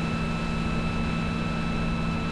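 Steady background hum and hiss with a few constant tones, even in level throughout: the recording's room and line noise in a pause between words.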